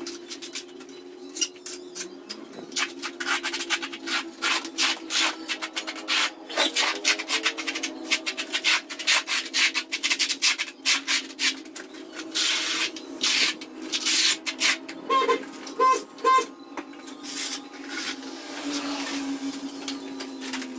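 Steel trowel scraping through cement-based tile adhesive on a concrete floor in many quick, uneven strokes, as the mortar is spread out and combed into ridges with a notched trowel. A steady low hum runs underneath, and three short tones come about three quarters of the way through.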